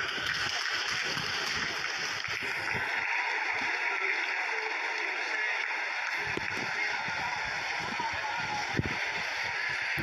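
Steady crowd noise of a large seated audience: a dense, even wash of sound with voices in it, running on after the speech has ended.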